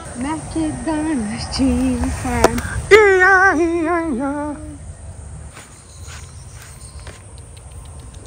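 A person calling a horse with wordless vocal calls whose pitch wavers and slides, over the first four and a half seconds, then faint outdoor background.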